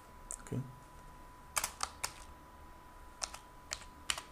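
Quiet computer keyboard typing: a handful of separate keystroke clicks, a few bunched together about a second and a half in and two more near the end.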